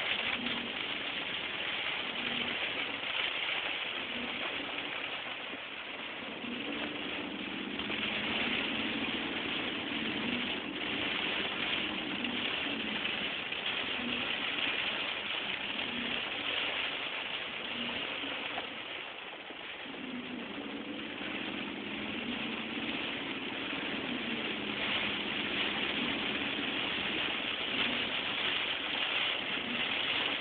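A car driving through heavy rain, heard from inside the cabin: a steady hiss of rain and wet road, with the engine running beneath it.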